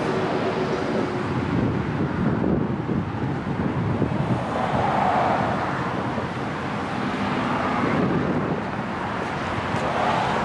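Outdoor background rumble with wind on the microphone, swelling and easing a few times.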